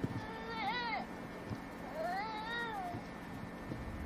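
A young child's voice: two short high-pitched whining calls, each rising then falling in pitch, the first about half a second in and a longer one about two seconds in.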